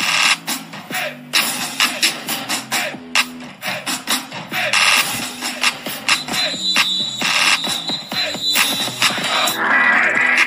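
Background music with a steady beat and a bass line stepping between notes; a high sustained tone enters about six seconds in.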